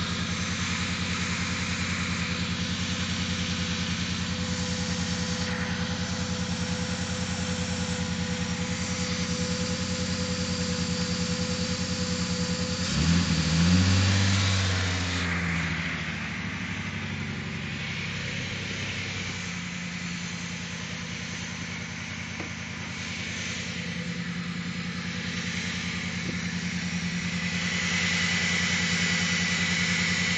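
2002 Chrysler Concorde's V6 idling under the open hood, revved once briefly about halfway through, its pitch rising and falling back to idle. The idle is rough and a bit high, which the owner puts down to a vacuum leak from intake bolts left loose after his own disassembly.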